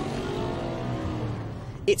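Audi RS4 Avant's 4.2-litre V8 pulling hard from a launch-control start. The engine note fades out over the first second and a half.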